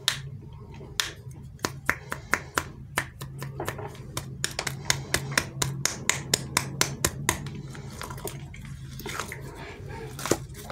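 Fingers squeezing and kneading a rubbery ball squishy, making many sharp sticky clicks and pops as the skin grips and lets go of its surface. The clicks come irregularly, a few a second, and are thickest in the middle.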